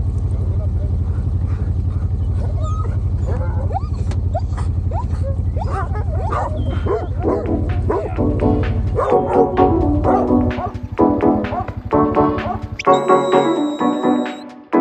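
Working farm dogs barking and yipping excitedly over the steady low running of a farm bike's idling engine. Background music comes in about eight seconds in and carries on to the end, with the engine dropping out near the end.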